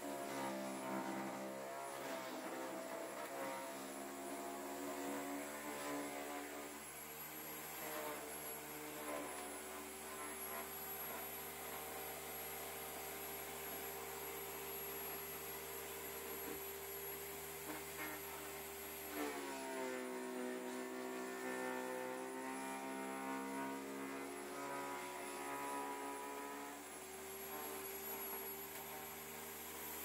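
Electric garden shredder running as branches are fed through and chipped, its motor tone dipping and recovering a few times under load, most clearly about two-thirds of the way through.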